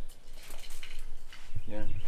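A short pause with faint outdoor background and a few light clicks, then a man says "yeah" near the end.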